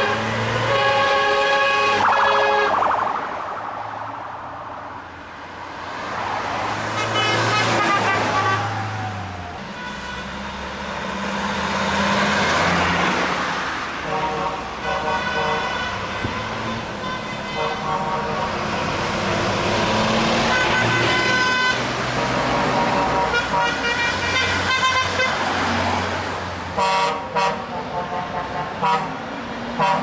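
A convoy of tow trucks driving past, the drivers sounding their horns: several long blasts over the low running of the truck engines and the swelling noise of passing vehicles, then a quick series of short toots near the end.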